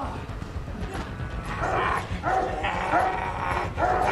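A dog barking and snarling over a steady low rumble, from a film soundtrack.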